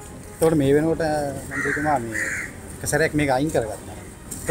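A crow cawing twice in quick succession, two harsh calls about half a second apart, heard behind a man's speech.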